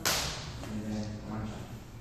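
Cotton karate gi snapping with a punch: one sharp swish at the start that fades within about half a second. Faint voices murmur behind it.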